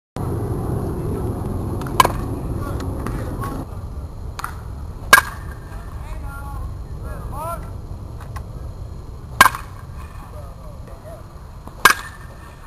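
A baseball bat striking pitched balls in a batting cage: four sharp cracks a few seconds apart, the last the loudest, with a few fainter knocks between.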